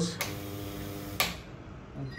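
A click, then the mains-fed iron-cored coil of a jumping-ring apparatus hums steadily for about a second while energised at 220 V AC, ending with a second click.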